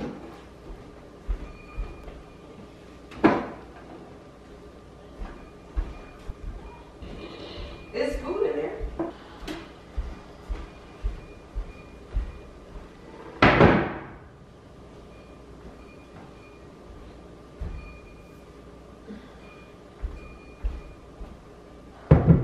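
Dining chairs being lifted, moved and set down on a hardwood floor, with scattered knocks and footsteps. There is a sharp knock about three seconds in and a longer scrape about thirteen seconds in.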